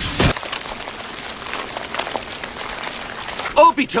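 Anime battle sound effects: a sharp hit just after the start, then a crackling hiss of energy. A man's voice starts shouting near the end.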